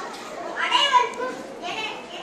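A child's voice speaking into a microphone, loudest about a second in, with other children's voices in the hall.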